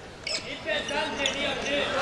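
A basketball being bounced on a hardwood court a few times, over indistinct voices in a large gymnasium.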